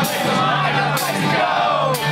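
Punk rock band playing live at loud volume, heard from close to the stage: distorted electric guitars and drums under a shouted lead vocal with cymbal hits.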